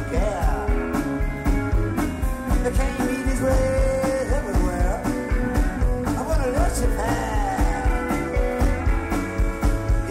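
Live rock band playing with a steady drum beat under a lead line of bending, sliding notes.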